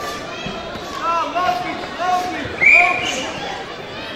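Short shouted calls echoing in a large sports hall, coming every half second or so, with one louder, higher shout a little after two and a half seconds in.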